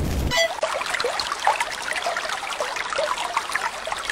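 Water trickling and bubbling, a steady run of many small gurgles, starting suddenly about a third of a second in.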